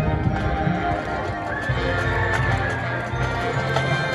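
Marching band playing its field show, with a clip-clop hoofbeat rhythm and a horse-like whinny rising and falling over the music in the middle.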